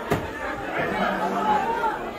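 Background chatter of several voices, with one sharp knock of a knife blade striking the wooden chopping block just after the start.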